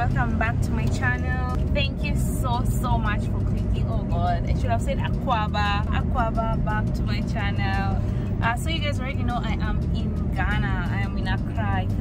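A woman talking, with a steady low rumble of a car interior beneath her voice.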